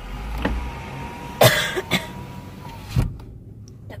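A woman coughing and choking in four sharp coughs, the loudest about a second and a half in. She is choking on caramel chunks drawn up the straw of an iced caramel macchiato.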